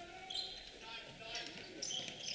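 A basketball being dribbled on a hardwood gym floor, faint, with short sneaker squeaks now and then.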